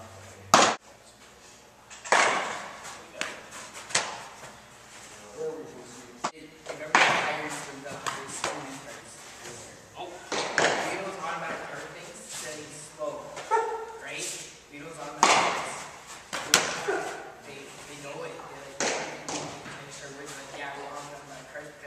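A baseball thrown repeatedly, each throw landing with a sharp smack and a short echo, about eight times at uneven intervals.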